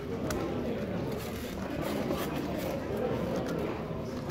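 Indistinct background chatter of many people in a large hall, with scattered light clicks from an X-Man Galaxy v2 Megaminx being turned by hand.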